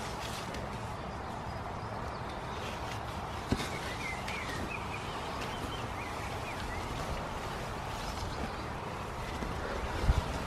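Hands digging through loose compost to lift new potatoes, the soil rustling and crumbling over a steady background hiss. There is one sharp knock about three and a half seconds in, and a bird chirps in short calls through the middle.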